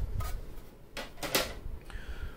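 A few short clicks and knocks of hard plastic graded-card slabs being handled, set down and picked up. The loudest comes a little past the middle.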